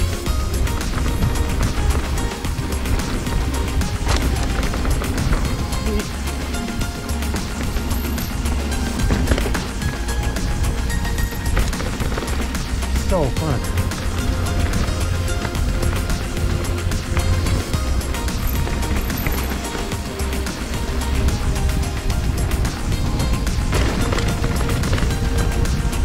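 Background music with a steady, repeating beat over the wind and tyre noise of a mountain bike riding down a dirt trail.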